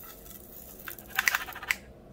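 A few light, quick clicks and taps from about a second in, with a short cluster near the middle: small diamond-painting drills and tools being handled at the craft table.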